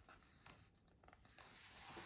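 Faint rustle of a picture book's paper page being slid and turned by hand, growing louder near the end.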